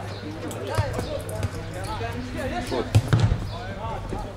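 A football being kicked and bouncing: a few sharp thuds, the loudest about three seconds in, among shouting voices.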